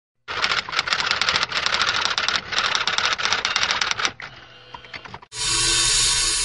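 Intro sound effect of rapid mechanical clicking in two long runs with a short break, dying away about four seconds in; a loud steady hiss starts near the end.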